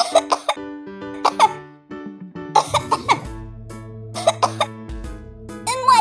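A voice coughing in short fits for a pig with a cold, a few coughs near the start and again about a second and a half in, over light background music.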